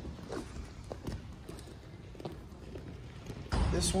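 Faint, scattered taps and thuds of bare feet moving on wrestling mats, with faint voices in the background. Near the end a sudden rush of noise starts and a man begins to speak.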